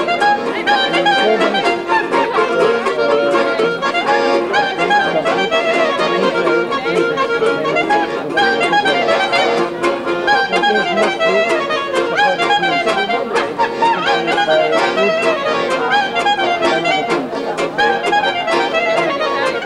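Accordion and clarinet playing a tune together without a break, the clarinet's notes now and then sliding in pitch.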